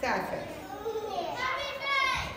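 A group of children shouting and calling out in high voices, opening with one loud shout that falls steeply in pitch.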